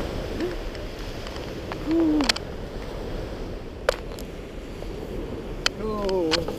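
Steady sea surf and wind noise, with a short hooted "ooh" from a person about two seconds in, rising and falling in pitch, and a few sharp clicks.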